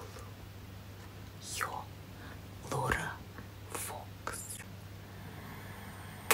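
A woman whispering softly in a few short breathy bursts, over a steady low hum.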